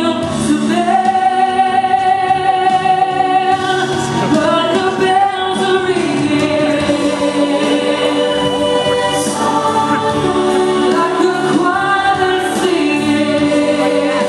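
Girls singing a song together into handheld microphones, with long held notes.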